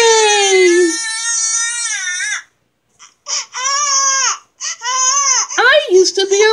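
A baby crying: one long wail falling in pitch, then after a short pause three shorter cries.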